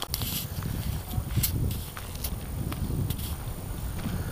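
Footsteps on a leaf-strewn woodland path, with wind rumbling on the microphone of a handheld camera. A few short sharp clicks sound through it.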